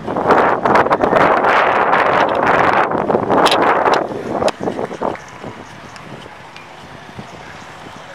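Wind buffeting a handheld camera's microphone: loud for about the first four seconds, with a few knocks, then easing to a low, steady rush.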